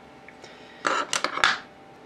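A brief clatter of small metal objects, a few quick clinks together about a second in, as tools are handled on the workbench.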